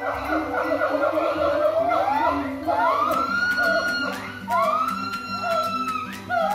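Siamang gibbons calling: a loud, overlapping series of rising whooping wails, each sweeping up and levelling off into a long held note, after a dense clamour of calls in the first two seconds.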